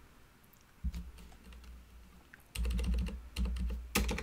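Typing on a computer keyboard: a few scattered keystrokes about a second in, then a quicker run of key presses from about halfway through.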